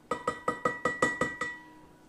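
Long-handled metal spoon clinking against the inside of a large glass jar while stirring sweet tea: about eight quick, even clinks, roughly five a second, each with a short glassy ring, stopping about a second and a half in.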